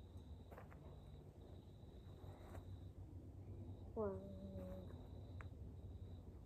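Quiet outdoor ambience with a faint, steady high-pitched whine that breaks off now and then, and a short hummed vocal sound about four seconds in.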